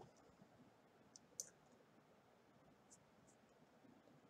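Near silence: room tone with a few faint, brief clicks, the loudest about a second and a half in.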